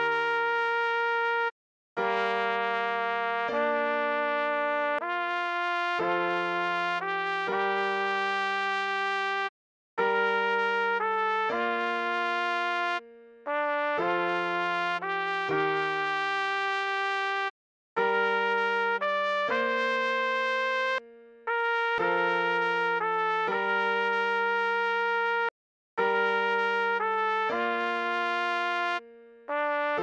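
Trumpet playing a slow melody in phrases of a few held notes, with lower notes sounding beneath. The music stops fully for a moment about every four seconds.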